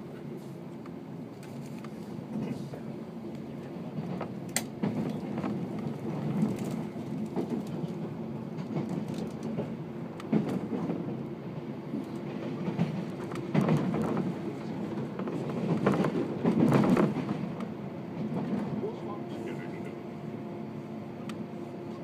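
Inside a JR 185 series electric train while running: a steady low hum with the wheels clattering over the rails, the clatter growing louder and busier for a few seconds past the middle.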